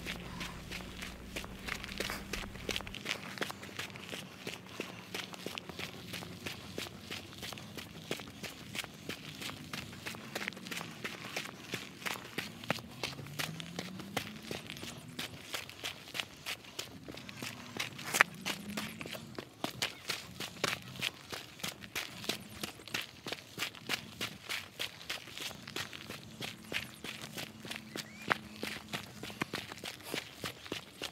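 Footsteps of a hiker walking on a dirt and rock trail at a steady pace, about two steps a second, with one sharper tap a little past halfway.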